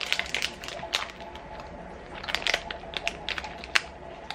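Plastic snack wrapper around a chocolate-coated marble cake crinkling and crackling as it is peeled open by hand, in irregular sharp crackles.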